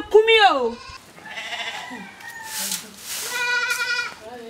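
Goat bleating twice: a short call falling in pitch at the start, and a longer, steady call near the end. A brief hiss comes between the two calls.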